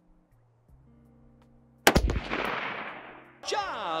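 A single shot from a 5.56 AR-15-style rifle about two seconds in. It is sharp and loud, followed by an echo that fades over about a second and a half.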